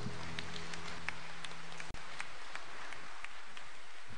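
The closing held chord of a devotional hymn fades out in the first moments. What remains is a steady hiss with scattered faint clicks and ticks.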